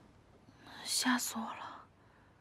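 A woman whispering to herself: a short, breathy muttered phrase lasting about a second in the middle.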